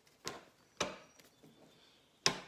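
A deck of reading cards being handled and shuffled in the hands, with two sharp taps about half a second apart in the first second, then only faint handling noise.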